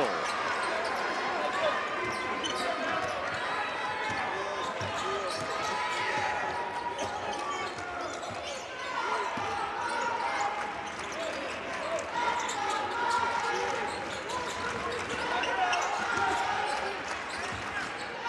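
Basketball game sound in an arena: a basketball dribbled on the hardwood court amid steady crowd chatter and players' voices.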